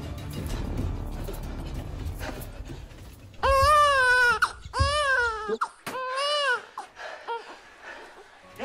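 A newborn baby crying: three loud wails, each rising then falling and about a second long, starting about three and a half seconds in, followed by a few shorter, fainter cries. Background music plays underneath in the first few seconds.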